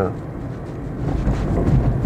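Road and tyre noise heard from inside the cabin of a moving Dacia Spring electric car: a steady low rumble that grows a little louder about halfway through.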